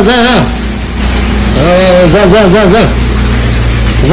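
A voice singing short phrases with a quick, regular waver in pitch, over a steady low hum.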